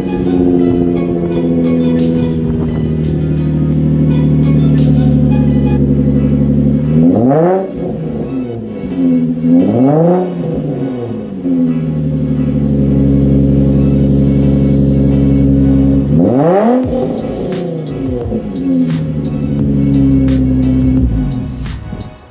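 Nissan 350Z's 3.5-litre V6 running through a freshly installed Motordyne Shockwave TDX2 cat-back exhaust, just after start-up: a steady, loud idle that settles from a fast start-up idle, then three short revs that rise and fall, two close together about a third of the way in and one more past the middle.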